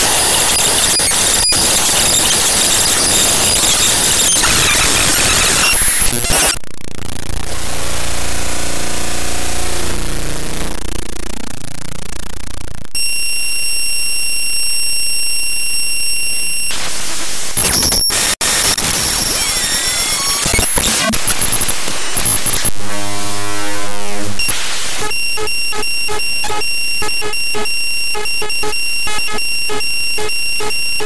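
Loud, glitch-distorted electronic audio of a broken-television effect, changing every few seconds. It opens with dense hissing static, then a warbling sweep, then a steady high-pitched beep, then gliding tones, and near the end fast stuttering pulses.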